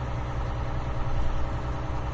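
Semi truck's diesel engine running at low speed, heard inside the cab as a steady low drone.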